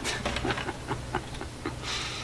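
A man chuckling quietly in short breathy bursts, over a faint steady low hum, with a brief rustle near the end.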